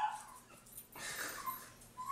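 A dog whimpering faintly, a few soft whines from about a second in.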